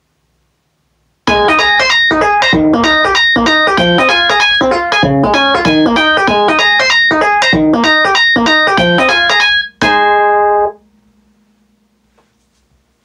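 A smartphone ringtone played through a speaker system: a bright, piano-like electronic melody of quick notes starts about a second in and runs for about eight seconds. After a brief break it ends on one held chord that cuts off about a second later.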